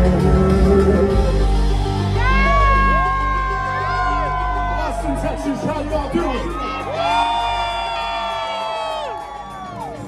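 Live band music heard in a club: a keyboard synthesizer and steady low notes that thin out after about six seconds. Over it come two long, high held whoops from the audience, one about two seconds in and one about seven seconds in, each rising at the start and falling away at the end.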